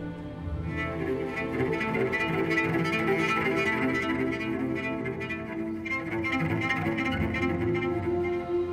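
Orchestral TV-score music led by bowed strings: a cello line carrying sustained, held notes over a chamber string orchestra.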